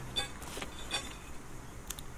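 A few faint light taps and paper rustle as a curved, notched steel angle iron is shifted on a paper template.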